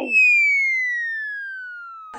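Comic descending-whistle sound effect: one smooth tone sliding steadily down in pitch for about two seconds while fading, a cartoon 'air let out' gag for a belly going flat.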